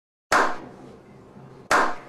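Two loud hand claps about a second and a half apart, each sudden and ringing out briefly: a slow clap.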